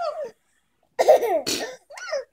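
Short bursts of laughter: a brief falling laugh, a pause of under a second, then a louder laugh with a cough-like rasp, and another laugh starting near the end.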